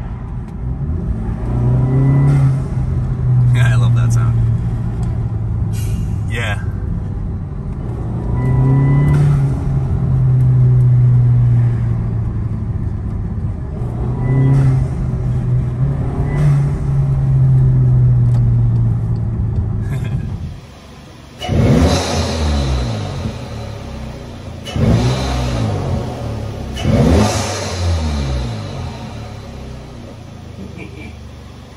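Volkswagen Passat 1.8 TSI turbocharged four-cylinder with a rear muffler delete and a CTS turbo intake, heard from inside the cabin pulling hard through several gears. The engine note climbs and drops back at each shift. About two-thirds of the way in it switches to the parked car being revved three times, each rev rising and falling back.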